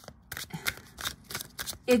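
A deck of tarot cards being shuffled through by hand, the cards making a run of light, quick clicks, several a second.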